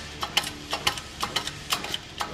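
A shop press pushing a tapered roller carrier bearing onto a Ford 9-inch differential carrier, with a run of sharp metallic clicks, about two to four a second, over a faint steady hum.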